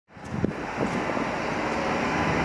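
Steady outdoor noise: an even rumbling wash with a low undertone and no distinct event.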